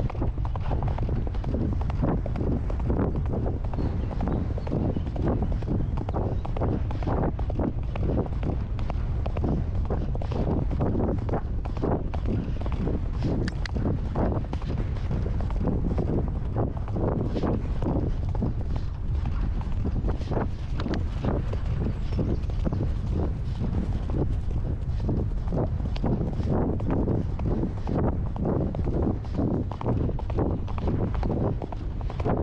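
A horse's hooves striking a grass track in a steady run of hoofbeats, with wind rumbling on the microphone.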